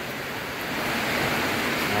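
A steady rushing hiss with no distinct events, growing a little louder toward the end.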